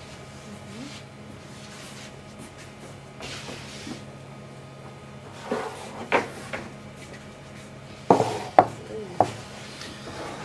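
Kitchen equipment being handled, with a few faint clatters midway and three sharp knocks in the last two seconds, over a steady low hum.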